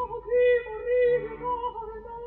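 Operatic soprano voice singing several held notes with vibrato near the same pitch, over faint orchestral accompaniment. The sound is muffled and narrow, as on an old 1962 opera broadcast recording.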